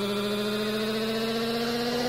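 Psytrance synthesizer chord held without a beat and slowly rising in pitch: a build-up sweep in a breakdown of the track.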